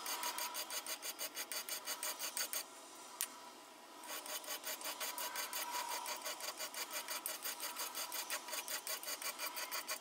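Hand file being stroked quickly and evenly across the edge of a clamped metal workpiece to finish the filed surface. The strokes break off for about a second and a half a little before the halfway point, with one click in the gap, then carry on.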